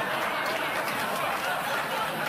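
Studio audience laughing, many voices together, over a pan of Italian bacon, onions and garlic sizzling on a very hot burner.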